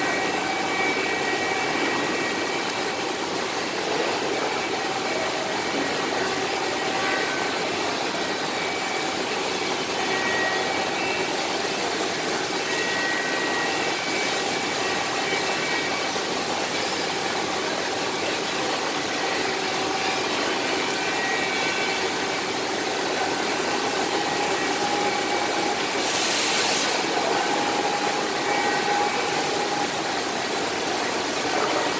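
Barberan PL 32 profile wrapping machine running steadily as a wooden profile feeds through its rollers: an even mechanical hum with faint whining tones. A brief hiss near the end.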